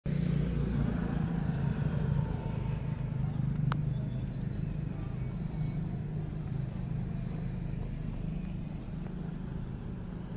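Road traffic: a steady low engine rumble from vehicles on the street, with a brief sharp click a little under four seconds in.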